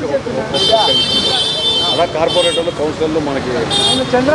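A vehicle horn sounding a high, steady note for about a second and a half, starting about half a second in, then twice more briefly, once mid-way and once near the end, over men talking close by.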